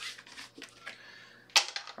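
Playing cards and casino chips being gathered off a felt blackjack table: a few light clicks and clacks, with a louder, sharper clack about one and a half seconds in.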